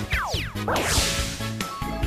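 Bright intro jingle with cartoon sound effects: quick falling pitch sweeps, a rising sweep, then a loud swish about a second in, over steady music.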